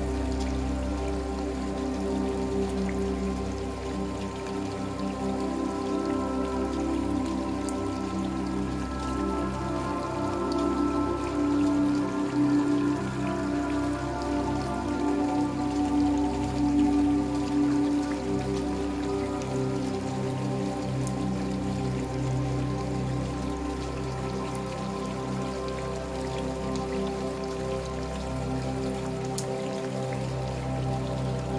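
Rain falling, with scattered raindrop ticks, under slow ambient new-age music of long held chords that shift gradually.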